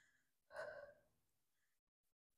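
A woman's short, breathy exhale of effort, under half a second long, about half a second in; otherwise near silence.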